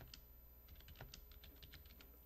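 Faint, rapid, irregular light clicks, bunched mostly in the second half, over a steady low hum.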